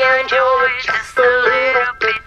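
A singing voice in a song cover, holding several sustained notes with short breaks between them, over light backing music.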